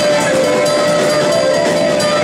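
Live blues band playing, with one long note held steady over the band.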